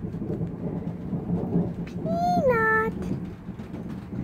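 Thunder rumbling over the first three seconds, fading out toward the end. About two seconds in, a single drawn-out high call rises and then falls in pitch.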